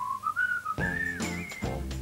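A whistled tune in a TV advertisement: a few thin whistled notes step upward, then fuller music comes in about a second in.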